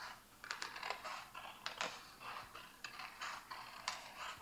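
Scissors cutting slowly around a paper circle: quiet, irregular snips of the blades with the light rustle of the paper between them.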